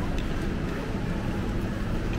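Supermarket room noise: a steady low rumble, with faint, indistinct background sounds.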